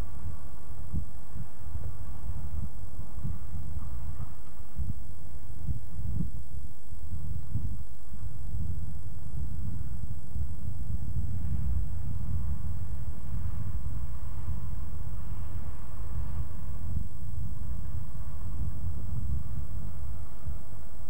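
Wind buffeting a camcorder's microphone outdoors: an uneven low rumble that comes and goes in gusts.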